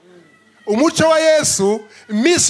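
A man's amplified voice: after a short pause, one drawn-out, pitch-bending exclamation about a second long.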